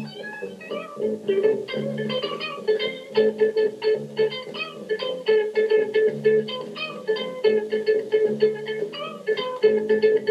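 Live rock band playing: a guitar picking rapid lead notes over a repeating lower line of held bass notes.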